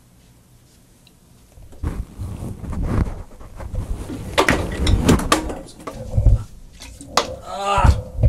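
Bottles and a glass test jar being knocked over on a small wooden table: a run of irregular clattering knocks and thuds starting about two seconds in, with a man's short vocal exclamation near the end.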